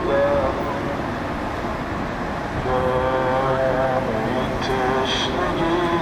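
A man's voice chanting a Shia mourning lament in long, drawn-out notes over the hum of a street procession. The chant is quieter for the first couple of seconds, then comes back strongly.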